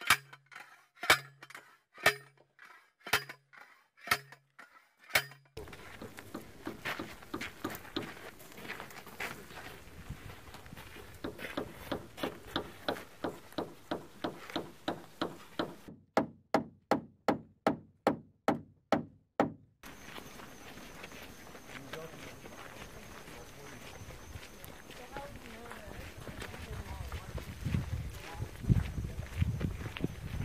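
Metal strikes about once a second as a steel picket is driven into the ground, then a long run of quicker hammer blows, about three a second, nailing a wooden target frame. The last third is only steady outdoor background.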